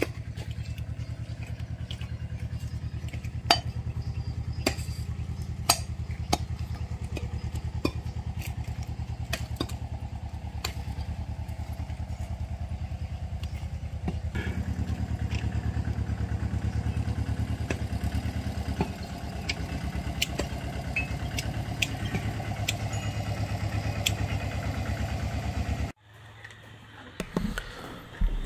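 A small engine running steadily, with scattered light clicks and knocks over it. About halfway through it grows louder and stays so.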